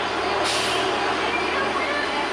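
Busy city street traffic noise, with a sudden loud hiss about half a second in, and voices in the background.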